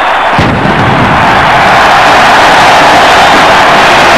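Stadium crowd cheering loudly after a successful extra-point kick, with a low boom about half a second in.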